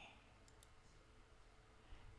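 Near silence: faint room tone with a few faint clicks about half a second in, from a computer mouse.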